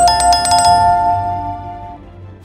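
Notification-bell sound effect from a subscribe-button animation: a small bell rung rapidly, about ten strikes a second for the first three-quarters of a second, then ringing out and fading over the rest.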